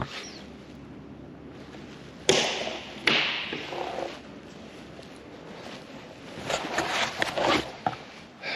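Handling noise from a handheld camera being carried with a knit sleeve against it: two sudden knocks a little under a second apart, each with a short rubbing tail. Near the end comes a cluster of light taps and rubbing.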